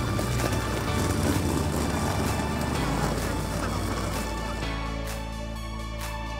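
Background music with the rough rolling rumble of wheeled suitcases pulled over a tarmac path; the rolling fades out at about four and a half seconds, leaving only the music.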